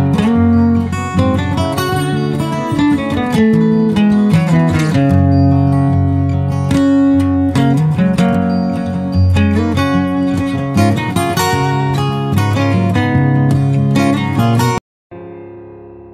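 Background music led by plucked acoustic guitar that stops abruptly near the end, followed by a much quieter, fading track.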